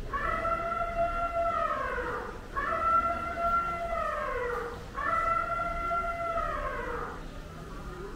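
An animal's long wailing calls, three in a row, each held on one pitch and then falling away at the end.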